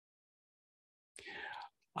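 Dead silence for about a second, then a soft, breathy vocal sound from a man, about half a second long and much quieter than his speech.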